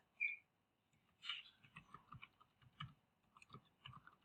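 Faint, irregular computer keyboard keystrokes as a short comment is typed, with a brief high blip near the start.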